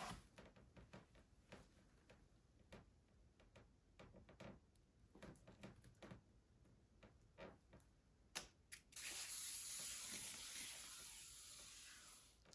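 A painted canvas on a board spinning on a turntable, faint and quiet, with scattered light clicks and rattles. About eight seconds in come two sharp knocks, then a steady hiss that fades away as the spin slows.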